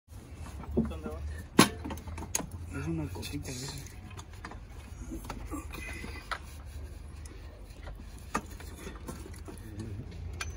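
Several sharp metallic clicks and knocks from tools and parts being handled on top of a car engine, the loudest about one and a half seconds in, over a steady low rumble.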